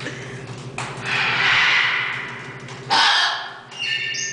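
Scarlet macaw squawking twice: a long call starting about a second in, then a shorter one that starts suddenly about three seconds in.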